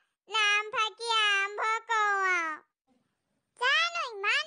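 A high-pitched, pitch-shifted cartoon voice in three drawn-out phrases that fall in pitch, then a pause of about a second before the voice comes back near the end.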